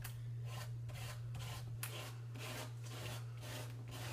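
Plastic applicator scraping flexible modeling paste across a stencil on paper, in short repeated strokes about three a second, over a steady low hum.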